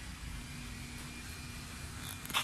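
Steady low background rumble of distant engine noise, with a faint constant hum.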